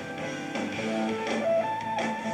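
Live rock trio playing: an electric guitar plays a melodic line of held single notes that climbs higher near the end, over bass and drums.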